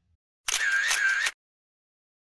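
A short title sound effect, under a second long: a few sharp clicks over a wavering high tone that rises and falls twice.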